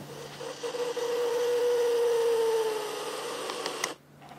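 Resistograph's electric drill motor whining as it spins its thin needle drill, the pitch sagging slightly over a couple of seconds. A few short clicks come near the end.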